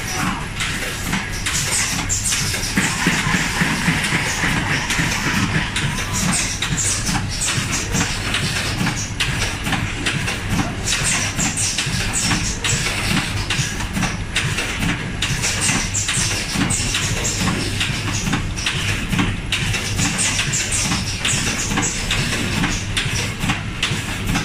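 Automatic rotary tube filling and sealing machine running: a steady low mechanical hum under fast, continuous clicking and clatter, with recurring short bursts of high hiss.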